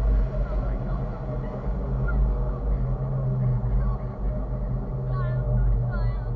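Steady low rumble of wind on the microphone and the tow boat's motor as a parasail lifts off, with girls' excited voices and a squeal near the end.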